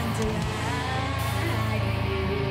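A heavy metal band playing live: electric guitar over bass and drums, loud and continuous.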